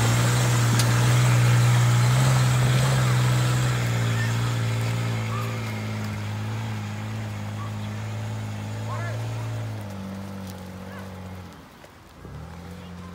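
Toyota Prado 120-series engine working under load as it climbs a steep dirt track, a steady drone that slowly fades as the vehicle pulls away uphill and drops away sharply near the end.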